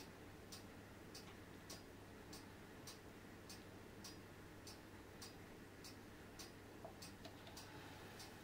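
Near silence with faint, evenly spaced ticking, a little under two ticks a second, over a low steady hum.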